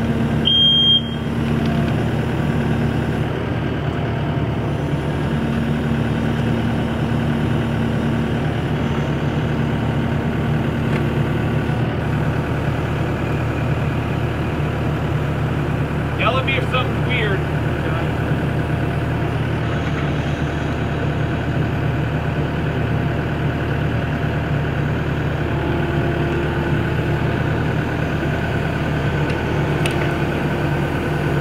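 Diesel engine of a Kubota SVL90 tracked skid steer running steadily under load as its boom attachment lifts a long wooden truss.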